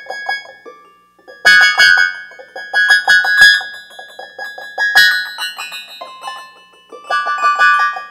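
Solo keyboard music with a piano sound: soft, quick notes at first, then loud chords struck about one and a half seconds in, again around three and five seconds, and once more near the end.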